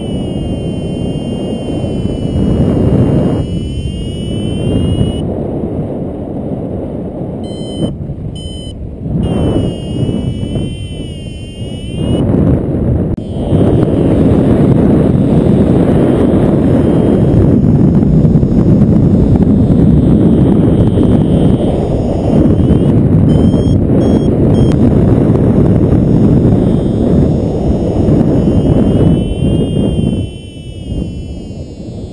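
Wind rushing hard over the microphone of a paraglider pilot's camera in flight. Over it, an electronic flight variometer beeps and sounds wavering tones now and then.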